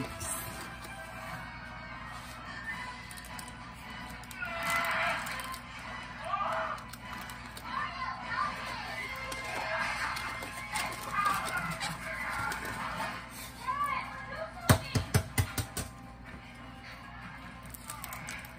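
Children's voices and music in the background over a low steady hum, then a quick run of about half a dozen sharp knocks a little before the end.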